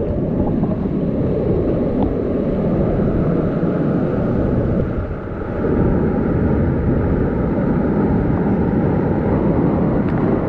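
Whitewater rapids rushing loudly and steadily around a kayak, heard close up as it runs a steep boulder rapid.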